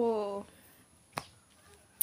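A woman's voice trailing off on a drawn-out syllable, then a pause broken by a single sharp click about a second later.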